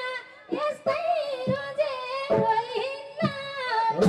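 A woman singing a Nepali lok dohori folk melody into a microphone over a PA, her voice carrying the phrases with the band mostly dropped out.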